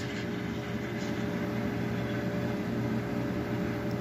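Espresso machine steam wand steaming milk in a stainless steel pitcher for a cappuccino: a steady, even hiss.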